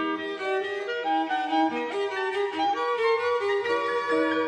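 Clarinet, cello and piano playing a Romantic-era chamber piece together, a melodic line moving note by note over accompaniment.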